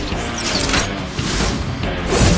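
Mechanical clicking and ratcheting sound effect of a bladed game weapon shifting its parts, over dramatic background music.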